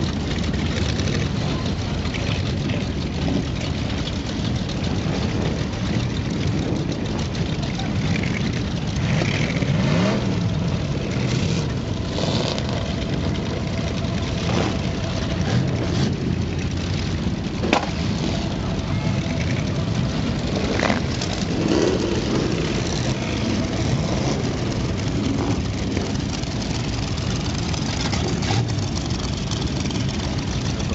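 Many vintage hot rod engines idling together on the sand, with occasional revs rising in pitch about a third and two-thirds of the way through, and a single sharp knock a little past the middle.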